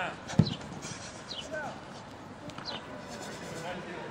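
Football players' voices and quick footfalls on a grass training pitch during agility drills, with one sharp thump about half a second in and a few short, high calls.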